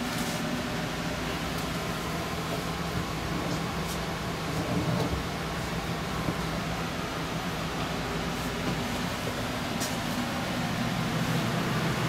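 Steady hum of an RV's air conditioner running, with a low drone under an even whir, and a few faint clicks.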